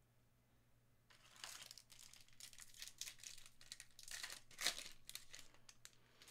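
A Donruss Optic basketball card pack's wrapper faintly crinkling and tearing open, with the cards handled as they come out, starting about a second in.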